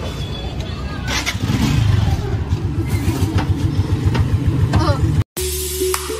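A motorcycle engine running close by, low and pulsing, with brief voices. Near the end the sound cuts to background music.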